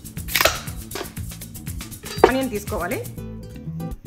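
A kitchen knife drawn out of its plastic blade guard, a short scraping swish about half a second in, over background music.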